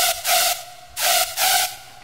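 Hard trap synth patch from the Serum software synthesizer played alone: two loud, hissy notes on the same pitch, the first ending about three-quarters of a second in, the second starting a quarter-second later and lasting about as long.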